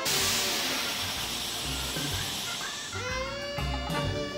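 A hissing smoke burst from a fembot's bra guns, a film sound effect that starts suddenly and fades away over about three seconds, over music with a steady beat.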